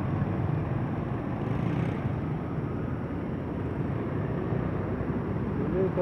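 Steady street traffic: engines and tyres of passing cars and motorcycles.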